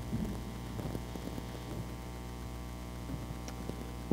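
Steady electrical mains hum from the sound system, with a few faint knocks and rustles as a headset microphone is handled and fitted.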